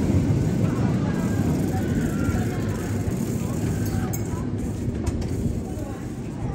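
Vekoma steel roller coaster train rumbling along its track close by, easing off slightly toward the end, with faint riders' voices.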